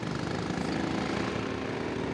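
A small go-kart engine running with a steady, even drone.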